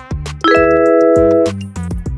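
Background music with a steady beat, and a loud chime sound effect that starts about half a second in and rings for about a second. It marks time running out and the answer being revealed.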